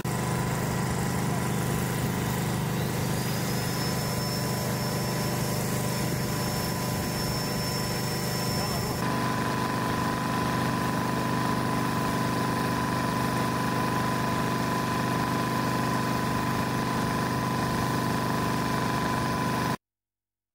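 Steady hum of a small engine-driven portable generator running. A thin high whine rides over it in the first half; the sound shifts about nine seconds in and cuts off suddenly just before the end.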